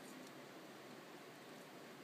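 Near silence: faint, steady room hiss.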